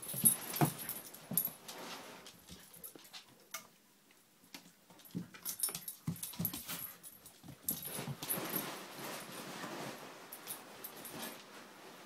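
Two Siberian husky puppies play-fighting: irregular bursts of puppy vocal sounds and scuffling, with a quieter lull about three to five seconds in and a longer busy stretch in the second half.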